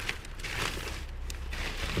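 Plastic bag rustling and crinkling as it is pulled out of a cardboard box, with a few small clicks, over a steady low hum.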